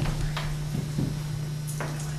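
A steady low hum with a few faint clicks and soft knocks over it.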